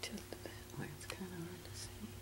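A person murmuring quietly under their breath, in short broken fragments with a few soft clicks, over a steady low hum.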